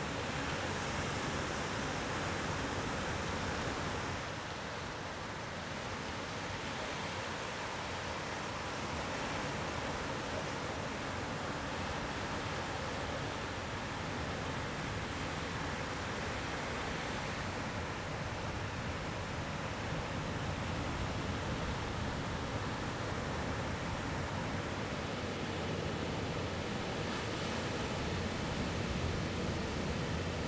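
Ocean surf breaking and washing ashore: a steady rush of noise that swells and eases slightly, dipping a little about four seconds in.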